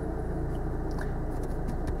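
A car engine idling steadily, heard from inside the cabin of the stopped car: a low, even hum.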